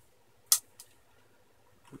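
A small screwdriver and a bare laptop hard drive being handled: one sharp click about half a second in, then a fainter tick, with little else between them.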